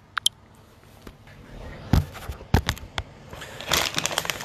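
Handling noises: a few separate sharp clicks and knocks, then a burst of crackling near the end, as a plastic bag of hemp flower is picked up and handled.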